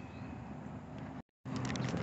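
Steady outdoor background noise with no distinct event, broken by a brief total dropout just past the middle, then a few light clicks.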